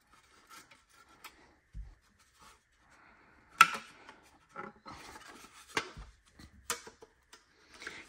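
Radio mounting sleeve being handled while its small locking tabs are bent back by hand: faint rubbing and scraping with scattered small clicks and three sharper clicks in the second half.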